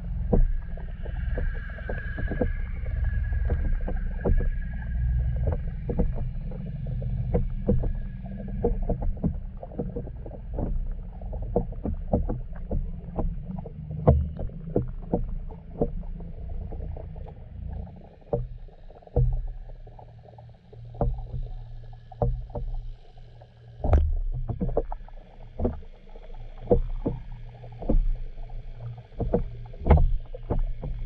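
Underwater lake sound picked up by a submerged camera: a steady low rumble with frequent irregular sharp clicks and ticks. A faint high whine sits over it during the first ten seconds or so.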